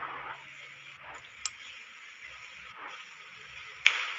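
Low room noise and hiss during a pause between spoken phrases, with two brief sharp clicks: one about a second and a half in, and one just before the end.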